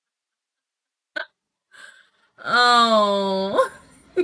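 A woman's voice: a short sharp catch of breath about a second in, then a long wordless drawn-out vocal cry held for about a second, its pitch sweeping up at the end.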